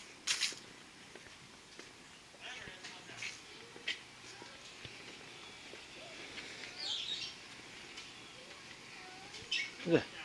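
Quiet outdoor ambience with faint, distant voices, and a bird chirping briefly about seven seconds in.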